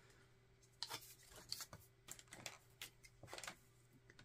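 Faint short scratches and rustles of a pen writing on a paper sticky note, with soft paper handling as the note is taken from its pad.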